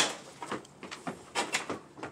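A hammer strikes a screwdriver once, driving it through a thin steel roofing panel to punch a hole, at the very start. It is followed by several lighter knocks and clinks of metal as the tools are handled and set down.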